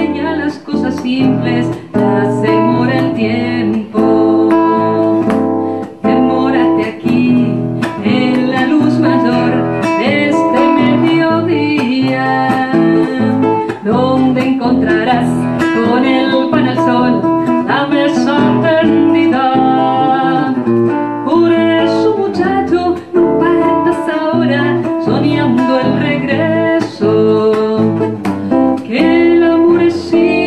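Live classical guitar played with a woman's singing voice joining in at times.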